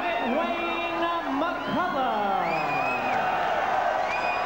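A ring announcer's amplified voice drawing out the winner's name in long, held syllables, with crowd noise behind it.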